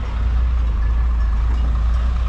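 Large cab-over livestock truck's diesel engine running close by: a steady, loud low rumble.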